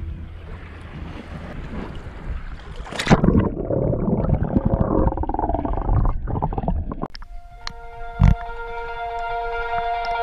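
Muffled water noise of a camera underwater, with a sharp hit about three seconds in followed by churning, bubbling water. From about seven seconds a music track with held synth chords comes in.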